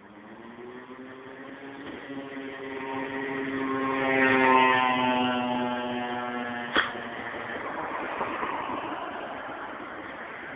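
Engine of a passing road vehicle: a steady pitched hum that swells to a peak about halfway through, then fades away. A single sharp knock comes near the end of the hum.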